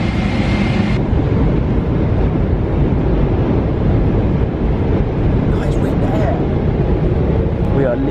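Steady low roar of an airliner's jet engines and rushing air, heard inside the cabin as the plane climbs after takeoff.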